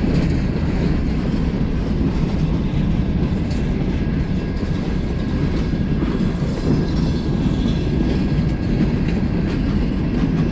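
Freight cars rolling past on steel wheels: a steady, loud rumble of wheels on rail, with a faint steady high tone throughout.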